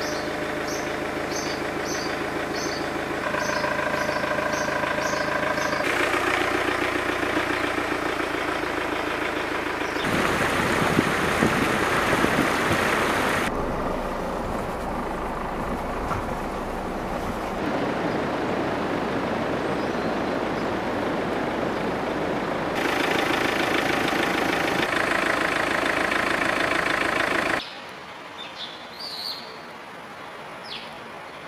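Outdoor street sound that changes abruptly every few seconds: steady vehicle engine noise and traffic, with a bird chirping repeatedly at the start and again near the end, where it turns quieter.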